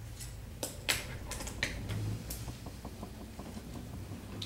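Marker pen writing on a whiteboard: a series of short scratchy strokes and taps, with a quick run of small ticks in the middle, over a steady low hum.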